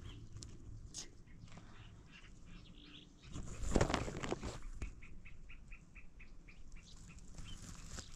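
Outdoor ambience with a brief rushing noise about three and a half seconds in, then a small bird giving a quick run of short, evenly spaced high chirps, about five a second for some two seconds.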